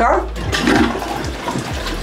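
A Japanese electronic bidet toilet flushing on its own, set off automatically by getting up from the seat: a steady rush of water.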